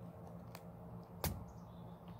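Scissors snipping through a frog's skin and bone: a faint click, then a sharper snip about a second in, over a low steady hum.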